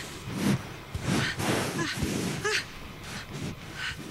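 Velociraptor sniffing from the film's soundtrack: a run of short, breathy sniffs about every half second as the animal smells the people in front of it.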